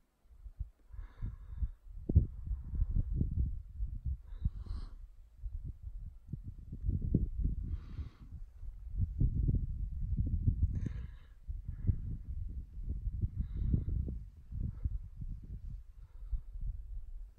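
Wind buffeting the microphone in uneven gusts, with a hiker's breaths every few seconds.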